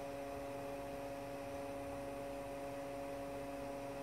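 A steady electrical hum, a few constant tones over a faint hiss, unchanging throughout.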